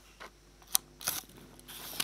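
A few sharp plastic clicks and knocks of a PC card and its cable being handled at a laptop's PCMCIA slot, the loudest about three quarters of a second in.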